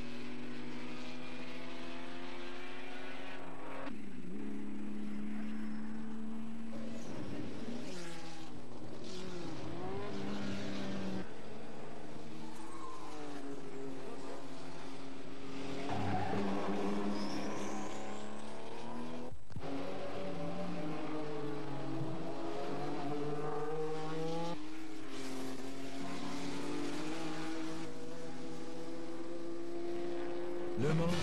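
Racing car engines at high speed, several cars passing one after another with their engine notes rising and falling in pitch as each goes by.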